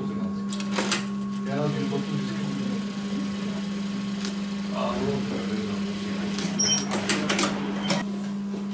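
Industrial lockstitch sewing machine stitching a fabric face mask, over a steady hum, with a quick run of sharp clicks near the end as the seam is finished.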